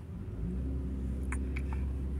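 Low, steady rumble of a car driving, heard from inside the cabin, rising a little about a third of a second in. Two light clicks come just after the middle.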